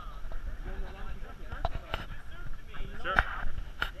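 Players' voices, with a few sharp knocks from a Spikeball game in play: the ball being struck by hands and the net.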